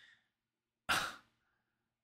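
A man's single short breathy sigh about a second in, with near silence around it, as he searches for words to say how blown away he was.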